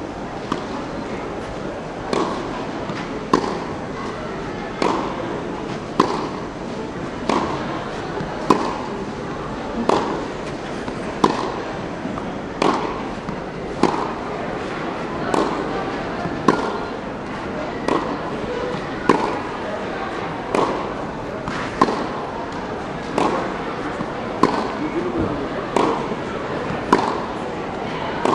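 Tennis ball being hit back and forth in a steady practice rally on a clay court: a sharp racket pop about every second and a quarter, over a murmur of spectator chatter.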